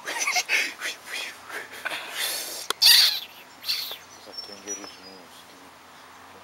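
Indistinct voices with a few short bird chirps. The loudest moment is a sharp click with a brief hiss about three seconds in, and the sound settles to a quiet steady background after about four seconds.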